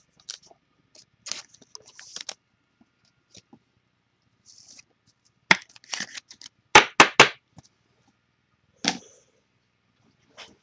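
Trading cards and foil packs handled on a tabletop: light rustling and card clicks, then sharp knocks. There is one knock a little past halfway, three quick knocks about a second later and a last one near the end.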